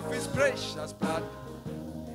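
Live gospel praise music: a keyboard holds sustained chords, and a man's voice through a microphone sings a short wavering run near the start.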